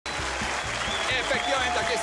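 A crowd clapping and cheering over background music with a steady beat.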